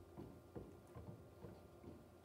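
Near silence: large-room tone with a steady low hum and a few faint, scattered soft knocks.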